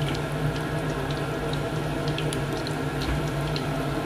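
Hot oil sizzling steadily around chicken skin deep-frying in a pan, with scattered small pops and crackles.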